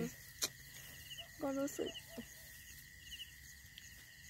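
Quiet night-time insect chorus, typical of crickets: short high chirps repeating about every second over a steady high-pitched trill, with a brief spoken word about one and a half seconds in and a single click near the start.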